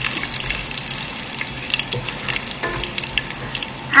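Sliced ginger and curry leaves sizzling steadily in hot coconut oil in a non-stick pan, with scattered small crackles.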